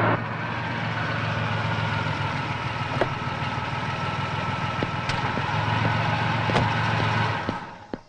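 An SUV's engine running at idle: a steady low hum with a few sharp clicks over it. It dies away near the end.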